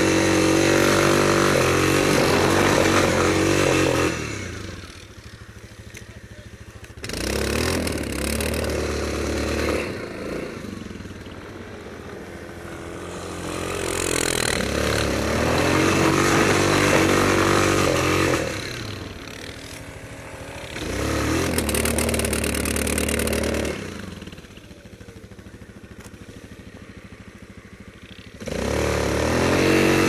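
Yamaha Grizzly 660 quad's single-cylinder engine revving hard under load in repeated bursts of a few seconds, falling back to a much quieter idle between them, as the quad works through deep snow.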